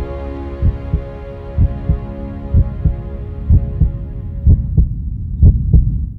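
Heartbeat sound effect: paired low thumps, lub-dub, about once a second, growing louder toward the end. Beneath it a sustained music chord fades away, and both stop suddenly at the end.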